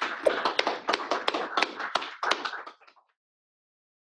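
Small audience applauding, many quick overlapping claps, cutting off suddenly about three seconds in.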